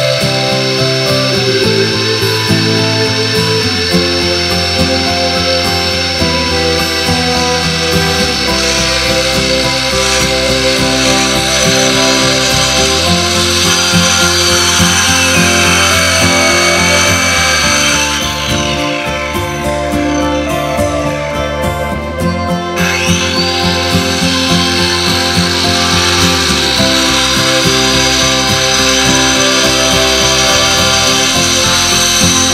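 Hand-held electric saw cutting through a wooden board, its motor whining steadily; about two-thirds through it stops and winds down, then starts again and runs back up to speed. Background music plays throughout.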